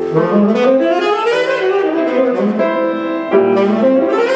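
A saxophone and piano playing jazz together, live. The saxophone sweeps up in a quick rising run, holds notes over the piano, and starts another rising run near the end.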